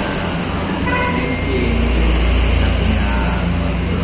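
A motor vehicle's low engine rumble from passing road traffic grows louder through the second half, with faint talking underneath it.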